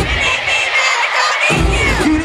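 Live concert music played loud through an arena sound system, with the crowd cheering and screaming over it. The bass drops out for about a second and a half, then comes back in.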